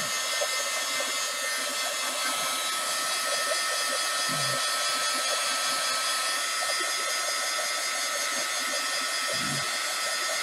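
Handheld heat gun running steadily, blowing hot air: an even rushing hiss with a faint high whine.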